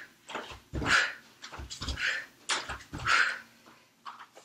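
Jump lunges: bare feet landing with low thuds on a rug-covered wooden floor, each landing followed by a sharp exhaled breath, three times about a second apart, then quieter near the end.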